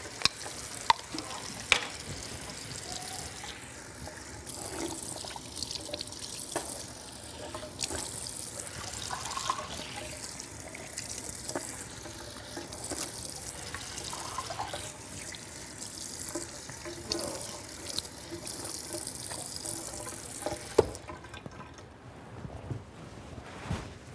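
Bathroom sink tap running steadily while hands splash and wash under it, with a few sharp clicks of things set down on the counter about a second in. The water stops near the end, with a sharp click.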